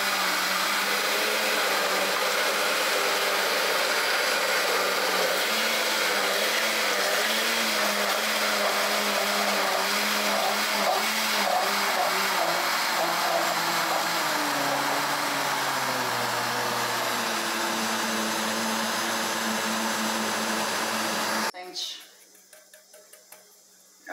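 Countertop blender running steadily, mixing a cornmeal cake batter while milk is poured in through the lid; its hum shifts lower for a few seconds past the middle as the load changes. The motor switches off abruptly near the end.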